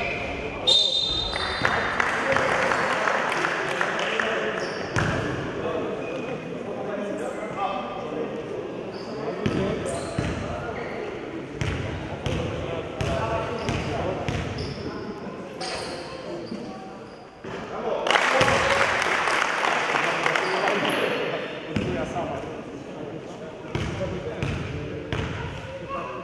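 Indistinct chatter of several voices in a large echoing room, mixed with frequent knocks and thuds; it grows louder about two-thirds of the way through.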